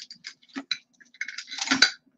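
Small jewelry pieces clinking and rattling as a hand rummages through a jar of mixed costume jewelry: a run of light clicks, with a louder cluster near the end.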